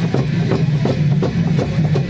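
Sakela dance music with a steady beat of drum strokes and cymbal clashes, about four strokes a second.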